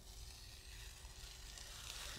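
Faint room tone: a low, steady hiss and hum with no distinct sound.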